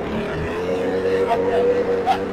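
RC aerobatic airplane's motor and propeller running up on the ground, the hum rising slowly in pitch as the throttle is eased up. This is the low part of the throttle range, which is sluggish to respond.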